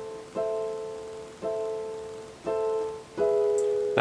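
Yamaha digital keyboard in a piano voice playing four right-hand chords, struck about a second apart and each left to die away. They are the song's A minor to E major move, the top voice dropping a half step.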